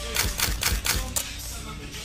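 A quick, irregular run of sharp clicks over a faint low rumble, in a quiet break of a music track.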